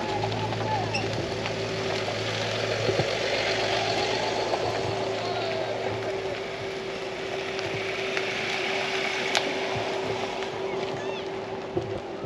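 A steady motor hum under outdoor background noise, with a low drone that fades about halfway through.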